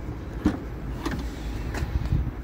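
Tailgate of a Nissan Qashqai being opened by hand: the latch releases with a short click about half a second in, followed by a few faint knocks as the hatch lifts.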